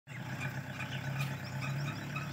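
Small pickup truck's engine running with a steady low hum as the truck drives off along a dirt track.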